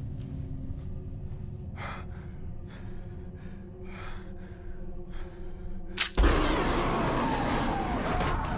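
Horror film sound design: a low steady drone under several short breathy gasps, then about six seconds in a sharp crack and a sudden loud rushing noise that keeps going.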